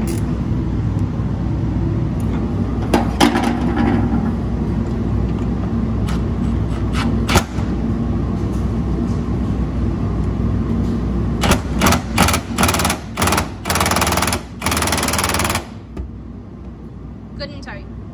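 A handheld cordless driver running in a series of short bursts and then one longer run of about a second, tightening a clamp bolt up under a pickup's bed rail. Under it a steady low hum, which drops away near the end; a couple of sharp clicks come earlier.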